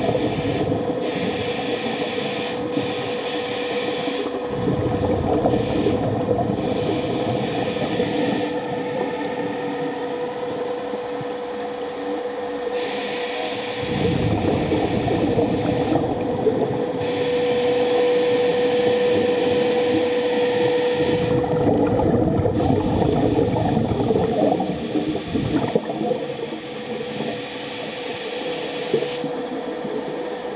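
Electric thruster motors of a homebuilt underwater ROV running, heard underwater: a steady whine at one pitch over a churning rush. A higher hiss cuts in and out every second or two, and the rush swells louder several times.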